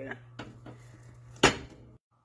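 Kitchen knife cutting through a firm, tough dryad's saddle mushroom on a cutting board: a few light clicks, then one sharp knock of the blade reaching the board about one and a half seconds in.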